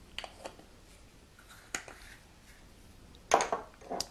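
Light clicks of glass spice jars being handled, then a louder clunk of a jar on the countertop a little past three seconds in.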